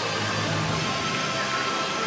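Steady outdoor ambience, an even hiss with faint music in the background.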